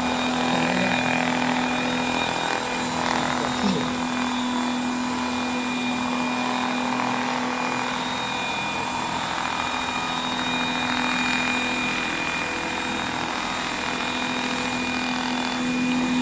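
Radio-controlled scale model Boeing CH-47 Chinook helicopter hovering low and setting down on grass. Its twin rotors and drive keep up a steady whine that holds one pitch throughout.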